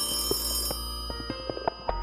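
Old telephone bell ringing, its high ring fading out about a third of the way in, mixed with a music score over a deep drone.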